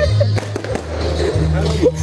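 Fireworks going off in a few sharp cracks about half a second in, over loud music with a heavy, steady bass.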